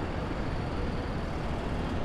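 Steady outdoor street ambience with distant traffic: an even low rumble and hiss, with no distinct events.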